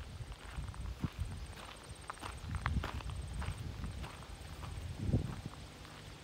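Footsteps of a person walking across grass, irregular soft thuds and scuffs over a low rumble on the microphone.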